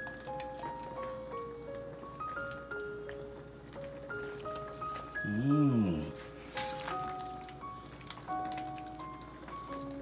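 Background music: a simple melody of single notes stepping up and down. About five and a half seconds in, a short sound rises and falls in pitch, followed by a sharp click.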